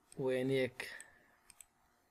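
Computer mouse button clicking: two sharp clicks in quick succession about a second and a half in, as a file is selected.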